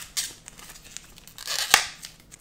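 Clear plastic shrink-wrap being torn and peeled off a cardboard box by hand: scattered crackles, with a sharp tear near the end.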